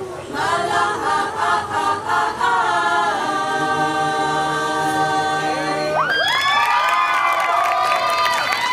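Mixed high-school choir singing a cappella, ending on one chord held for about three seconds. As the chord stops, the audience breaks into rising whoops and cheers.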